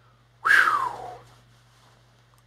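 A man's short vocal whoop that falls in pitch, breathy and under a second long, about half a second in.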